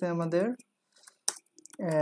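A man speaking briefly, then a few separate computer-keyboard key clicks as code is typed, then speech again near the end.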